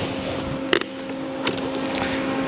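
A welding hood being fitted onto the head: a short sharp knock about three quarters of a second in and a lighter one a little later, over a steady machine hum with a low tone.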